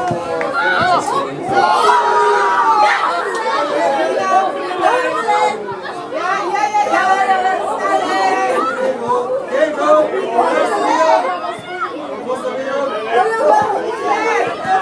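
Several voices talking and calling out at once, overlapping into continuous chatter with high-pitched calls, no single voice standing out.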